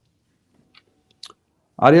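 A quiet pause broken by a few faint short mouth clicks, then a man starts speaking in Hindi-Urdu near the end.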